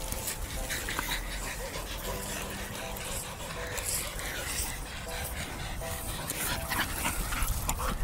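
A dog panting, with short faint whimpers now and then.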